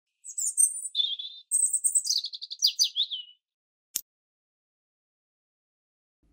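Bird song: a run of quick, high chirps and trills lasting about three seconds, followed by a single sharp click about four seconds in.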